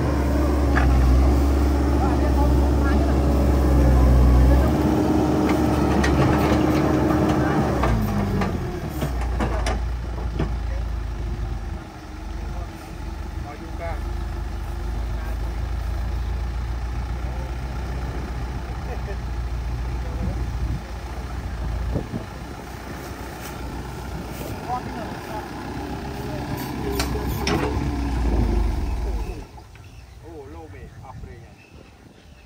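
Caterpillar 307D mini excavator's diesel engine running with a steady hydraulic whine; about eight seconds in the whine sags in pitch and fades and the engine note settles lower. The sound drops off sharply just before the end.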